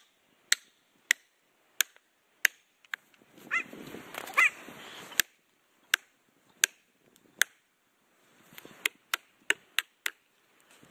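Plastic felling wedges being driven into the back cut of a large tree with a hammer: about a dozen sharp, dry strikes, a little under a second apart, with a break around the middle filled by a short noisy stretch with a couple of brief squeaky sounds. The hammering drives the wedges in to lift the tree and tip it toward its fall.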